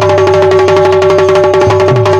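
Instrumental passage of Bundeli folk music: a harmonium holds steady notes over fast dholak drumming, whose deep strokes slide down in pitch.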